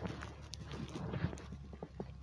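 A home audio recording playing back: irregular small knocks and clatter over a steady low electrical hum, with no clear speech.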